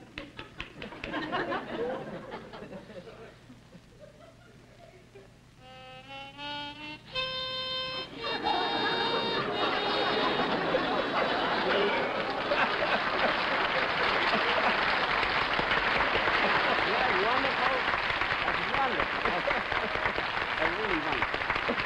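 Studio audience laughter, then a harmonica playing a few short notes and one held note of about a second, followed by a long, loud wave of audience laughter and applause.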